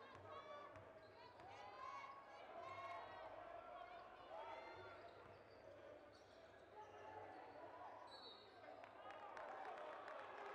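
Faint sound of a basketball being dribbled on a hardwood court, with players' and spectators' voices in the gym around it.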